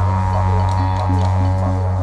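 Didgeridoo played live, a steady low drone whose overtones shift in a pulsing rhythm, with light percussion hits over it.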